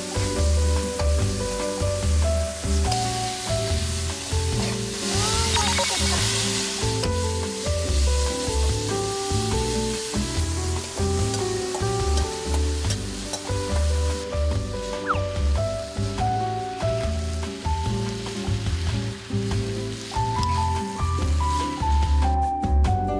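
Vegetables sizzling as they are stir-fried in a frying pan, loudest about five to seven seconds in. Background music with a melody of short notes and a steady bass beat plays over it.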